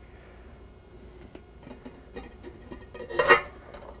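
Glass lid of an enamelware pot clinking and scraping against the pot's rim as it is gripped with silicone oven mitts and worked loose: a few light clicks, then one louder clatter a little past three seconds in.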